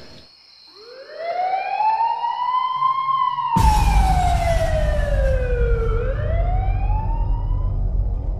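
Police car siren wailing in a slow rise, fall and rise again. About three and a half seconds in, a low rumble and hiss come in suddenly beneath it.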